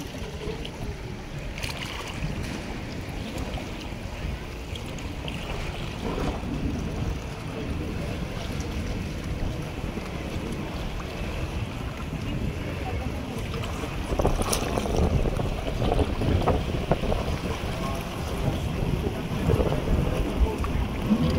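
Wind buffeting the microphone with water lapping in a small harbour, a steady low rumbling noise that grows louder about two-thirds of the way through.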